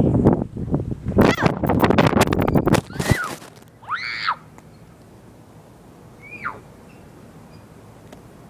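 A phone's own microphone rushing and clattering as the phone is thrown and falls, cutting off suddenly as it lands in grass about three seconds in. A child's high squeal follows, and a fainter call a couple of seconds later.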